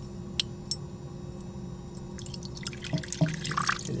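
Water poured from a clear plastic cup into a shallow reptile water dish: two single drips about half a second in, then a quick run of splashing and trickling in the last two seconds.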